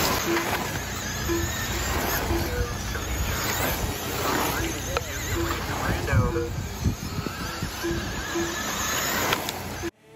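Radio-controlled dirt oval race cars running on a clay track, their motor whine rising and falling as they pass, over a steady noise of voices and short beeps that recur at one pitch. The sound cuts off suddenly near the end.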